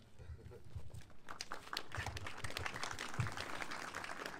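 Audience clapping, building up about a second in and carrying on as a dense patter of claps.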